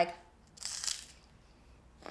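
A short crunch of a crisp baked aquafaba (chickpea-water) meringue cookie, about half a second long and starting about half a second in. The meringue is dry and airy, 'really crispy'.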